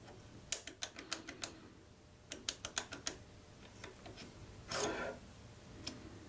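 Small metal clicks and clacks of a Wera quick-release bit adapter as its spring-loaded sleeve is pulled and the hex bit is worked out of it: two runs of quick, sharp clicks, then a brief rustle and one last click near the end. The sleeve has to be pulled back to release or insert the bit.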